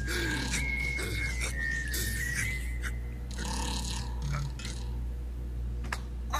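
An animated film's soundtrack playing at low level: music, with a thin high note held and wavering for about two seconds near the start.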